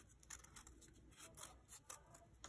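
Scissors cutting through a folded sheet of sketchbook paper: a few faint, short snips.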